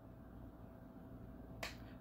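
Quiet room tone with a faint low hum, broken by a single short click about one and a half seconds in.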